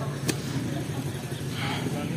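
Motorcycle engine idling: a steady low hum, with a single sharp click about a quarter of a second in.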